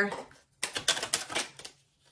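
A tarot deck being shuffled and a card drawn: a quick run of sharp papery clicks lasting about a second.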